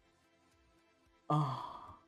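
A man's voiced sigh about a second in: a sudden breathy exhale that fades away over half a second.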